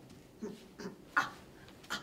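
A person's voice making four short non-word sounds, the loudest a little past halfway through.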